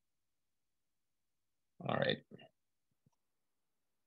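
Near silence on a gated video-call line, broken about halfway by a man briefly saying "All right", with one faint click about a second later.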